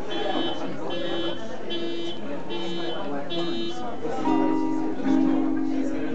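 Acoustic guitar being played: a short plucked figure repeated about every 0.8 s, then two louder ringing chords, about four and five seconds in.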